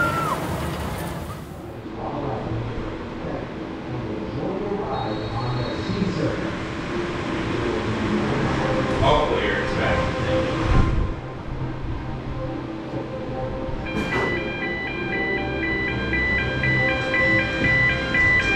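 Roller coaster loading station ambience: people's voices over background music. About two-thirds of the way through, a click is followed by a repeating electronic chime tune.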